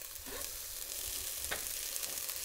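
Diced pheasant meat, peas and carrots sizzling steadily in a skillet as cooked rice is tipped in on top. There is a single light click about a second and a half in.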